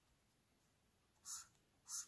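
Near silence, broken in the second half by two short, faint scratches of a felt-tip highlighter stroked across notebook paper.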